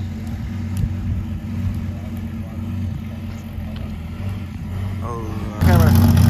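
A car engine runs steadily at a low idle. About five and a half seconds in it gets suddenly much louder as a Dodge Viper's V10 pulls away on the street.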